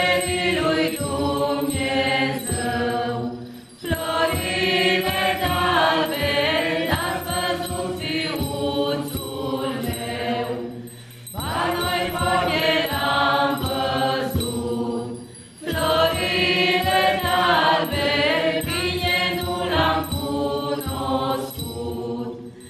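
A mixed group of men and women singing together without accompaniment, in phrases a few seconds long with brief pauses between them.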